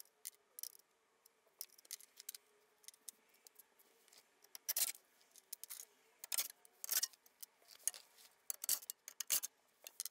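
Cordless ratchet spinning out underbody panel bolts in short bursts, with sharp metallic clicks and ticks in between. The bursts come thicker and louder in the second half.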